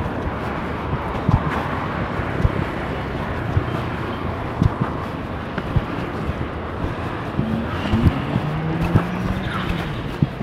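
Steady outdoor urban background noise by a car park, broken by irregular dull thumps, with a short pitched sound that wavers near the end.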